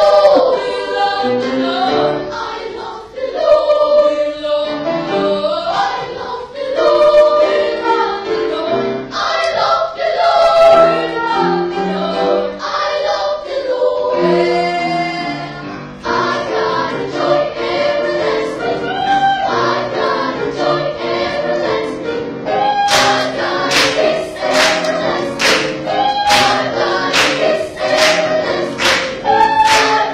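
Children's choir singing in several parts. About three-quarters of the way in, sharp rhythmic beats join the singing at roughly one and a half a second.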